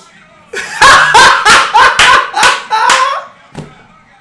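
A man laughing hard in a fast run of breathy bursts, about four a second for roughly two and a half seconds, starting about half a second in, then one short burst near the end.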